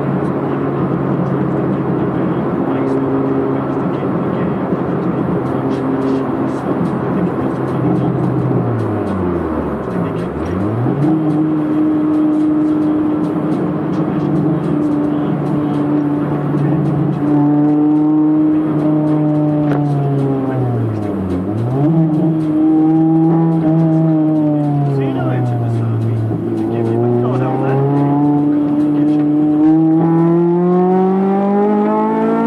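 Honda Civic's B18C4 VTEC four-cylinder engine heard from inside the cabin, running at high revs under load. Three times the revs drop away sharply and climb back, and near the end they rise steadily as it accelerates.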